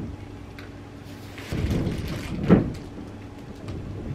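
A gust of wind outside. A rushing noise builds about a second and a half in, peaks briefly a second later, then dies down.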